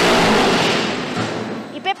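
Concrete block-making machine pressing a row of eco-bricks in their moulds: a loud, dense rattling rush that starts suddenly and fades over about two seconds.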